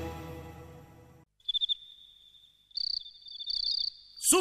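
A film song's music fades out in the first second. After a short silence come short bursts of high, rapidly pulsed cricket chirping, at the opening of the next song.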